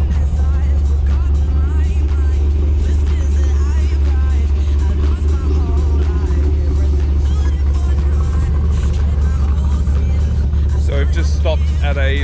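A steady low rumble, with faint music under it and a man's voice starting near the end.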